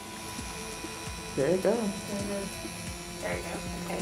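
Electric rotary tool with a cutting disc running with a steady whine as it cuts through an extremely long fingernail, with a person's voice briefly over it.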